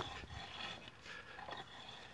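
Faint, irregular scraping and ticking of a garden rake's tines dragged through dry, crusted soil to loosen it.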